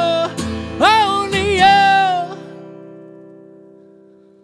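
Acoustic guitar strummed under a man's voice singing the song's closing phrase in high, wavering held notes. The strumming and singing stop a little over two seconds in, and the final guitar chord rings on, fading away.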